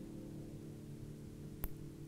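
Lowden acoustic guitar's strings ringing on faintly in a long sustain, several notes held together and slowly dying away. A small click near the end.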